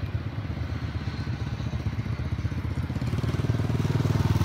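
Honda motor scooter's small engine running, growing louder about three seconds in as it comes close.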